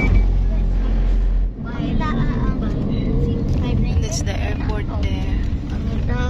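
Road and engine noise inside a moving car, with a heavy low rumble for the first second and a half. After that, voices talk over the steady running noise.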